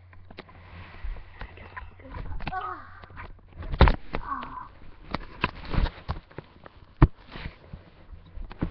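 Handling noise from a large pillow pressed down over the camera: fabric rustling and scraping, with knocks against the microphone. Two sharp thumps, about four and seven seconds in, are the loudest.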